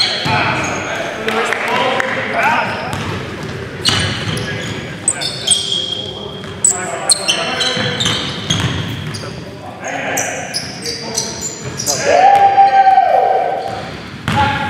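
A basketball bouncing and sneakers squeaking on a hardwood gym floor during game play, echoing in the hall, with players' voices. A loud drawn-out call, falling in pitch, near the end.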